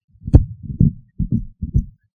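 Handling noise on a handheld microphone: a sharp knock about a third of a second in, then a few dull, muffled low thumps at uneven intervals.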